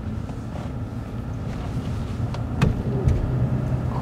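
A vehicle running: a steady low engine and road rumble, with two faint clicks a little past the middle.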